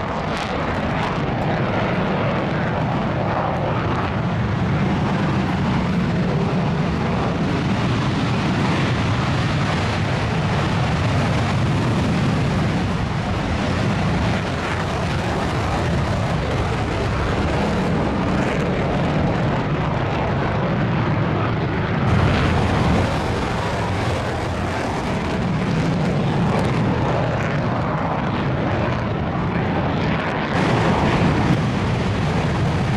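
JASDF F-15J fighter jets taking off and climbing with afterburners lit: a loud, continuous jet rumble that swells briefly about two-thirds of the way through.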